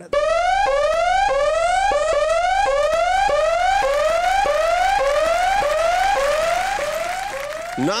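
An electronic alarm tone that rises in pitch and drops back, repeated about one and a half times a second, loud and steady, easing off just before the end.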